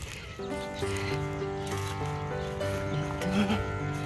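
Background music with sustained notes that change pitch in steps, coming in about half a second in.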